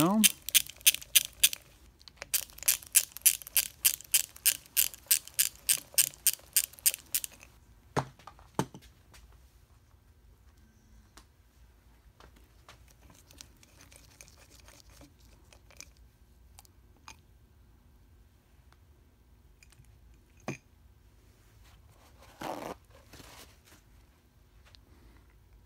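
A ratchet wrench clicking rapidly and evenly, about four clicks a second, in two runs over the first seven seconds or so as bolts are backed out of the cover of a Mercedes-Benz 190SL steering gearbox. After that come a few scattered metallic knocks, and a short scrape near the end.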